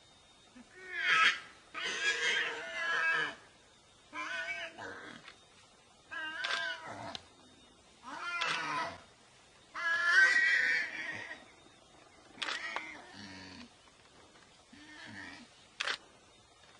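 Warthog squealing in distress while a leopard grips it by the neck: about eight separate high, wavering cries, each about a second long and a second or two apart, the loudest near the start and about ten seconds in.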